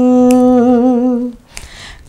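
One voice holding a long, steady note of a Nepali song, sung unaccompanied. The note ends about a second and a half in and is followed by a short, quiet gap.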